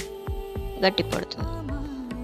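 Background music: one long held note that steps down to a lower pitch near the end, over a steady beat.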